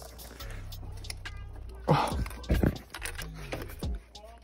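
Scattered clicks and light rattles of hands working among the wiring and hoses of a car engine bay, fiddling with plastic sensor connectors.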